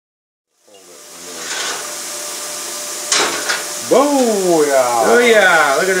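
Titanium Plasma 45 plasma cutter cutting steel plate: a loud steady hiss that starts suddenly about a second in, with a sharp crack about three seconds in, after which it grows louder. A man's voice talks over it during the last two seconds.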